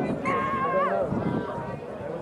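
A shrill, drawn-out shout in a high voice, held about a second and falling in pitch at the end, over background chatter.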